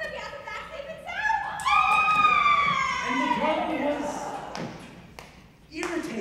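A stage actor's voice in a large hall: one long, drawn-out exclaimed call that slides down in pitch, followed by a few sharp knocks on the stage.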